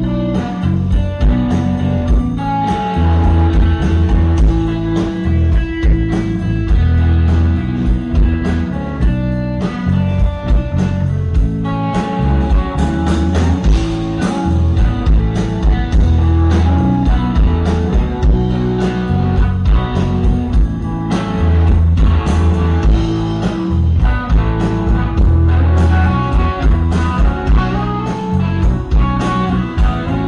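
Live rock band playing a blues-rock song, electric guitar to the fore over bass and a steady drum beat.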